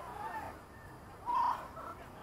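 Short, pitched shouts and calls from people around the field, with one louder yell about one and a half seconds in.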